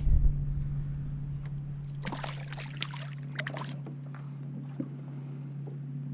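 A boat's motor running with a steady low hum, and a short burst of water splashing about two seconds in as a speckled trout is let go back into the water.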